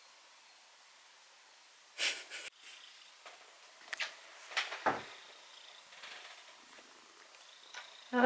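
Domestic cat purring quietly close by, with a few short, sudden noises, the loudest about two seconds in.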